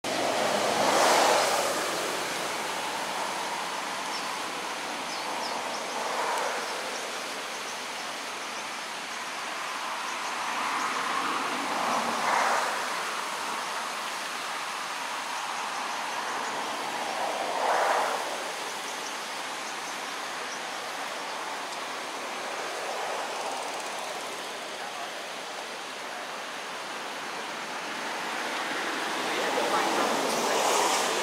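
Steady rush of water spilling over a low concrete weir, with four brief louder swells.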